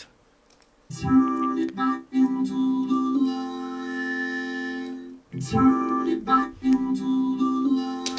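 Playback of a vocal run through FL Studio's Fruity Vocoder: a voice carried on sustained, held chords whose pitches stay level and change every second or two. It starts about a second in. With the voice fed fully left as the modulator and the instrument fully right, the two are well blended and the words are clear.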